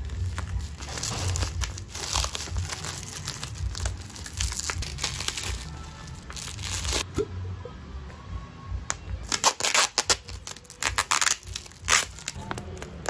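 Clear plastic wrap crinkling and tearing as it is peeled off a coffee bag by hand, in two spells, the second sharper and more crackly near the end. Background music plays underneath.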